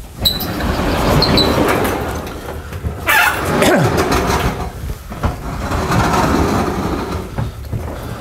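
Large sliding chalkboard panels being pushed along their tracks in a frame: a long rolling, rumbling noise, with a knock about three seconds in.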